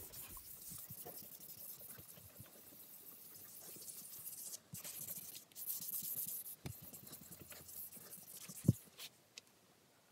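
5,000-grit wet-and-dry sandpaper rubbed back and forth by hand over a wet guitar body's finish, the last and finest sanding stage before polishing: a soft scratchy hiss that swells and eases with the strokes. Two light knocks come in the second half, and the rubbing stops shortly before the end.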